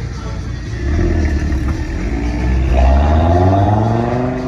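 Audi TT RS's turbocharged five-cylinder engine accelerating hard as the car pulls away, getting louder about a second in, then its note rising in pitch through the second half.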